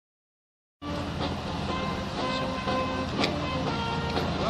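Vintage car engines running at low speed as a line of old cars rolls slowly past, a steady low hum with a few light knocks; the sound cuts in abruptly just under a second in.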